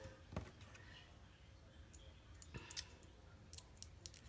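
Faint, scattered clicks of a hat pin poking a cut paper piece out of a small metal Thinlits cutting die, the two clearest about half a second and two and a half seconds in.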